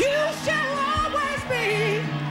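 Live gospel song: a lead voice slides up into a wavering, ornamented line over held band chords.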